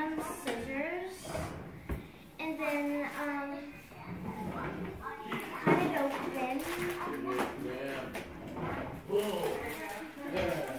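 Voices talking in the background through most of the stretch, broken by a few sharp knocks and clatters of things being handled on a kitchen counter, the loudest a little past the middle.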